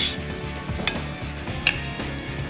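A metal utensil clinking three times against a glass bowl, about a second apart, while shredded cabbage salad is mixed. Background music plays underneath.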